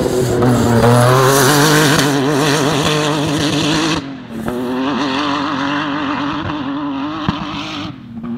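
Off-road desert race car passing at speed, its engine held at high revs with a note that wavers up and down. About halfway through the sound drops sharply and the engine runs on more quietly as the car moves away in its dust.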